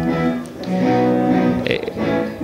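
Guitar chords strummed and left ringing, with a new chord struck about half a second in.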